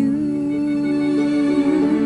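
A young woman's singing voice holding one long, steady note with a slight waver near the end, over soft musical accompaniment.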